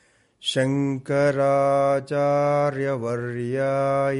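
A man chanting Sanskrit verses in long notes held on a steady pitch. It starts about half a second in, after a brief silence, with short breaks between phrases.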